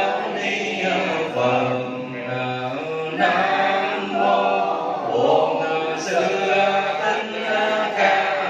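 Buddhist chant in slow, drawn-out syllables, led by a monk over a microphone with the congregation chanting along.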